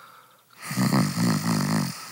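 A person snoring once: a single long, rattling snore that starts about half a second in and lasts just over a second, the sound of someone dozing off while told to relax.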